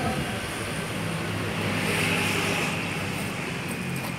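A passing vehicle: a steady engine-and-road noise that swells to its loudest about halfway through and then fades.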